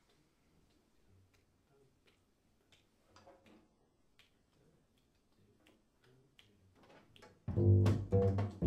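Quiet, sparse clicks and a few soft low notes, then a double bass comes in loudly with plucked notes near the end.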